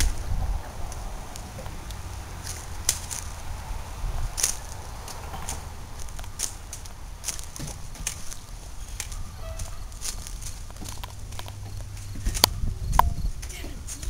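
Footsteps on wooden outdoor stairs: irregular sharp knocks every second or so, over a steady low rumble on the microphone.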